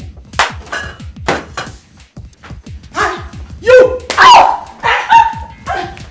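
Loud, high-pitched screams and cries from a woman in a physical fight, starting about halfway through, over background music with a steady beat. Two sharp hits come in the first couple of seconds.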